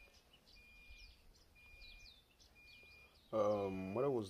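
Birds chirping outdoors: a short falling chirp repeated about twice a second, with a steady high tone that comes and goes. A voice starts talking near the end.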